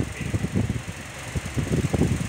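A fan running, its moving air buffeting the microphone in an irregular low rumble.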